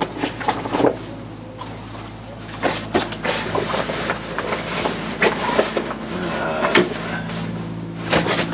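A padded fabric bag holding towing mirrors being pushed and shuffled into a caravan's plastic front locker: rustling and scraping, with several knocks as it bumps against the other gear. A steady low hum runs underneath.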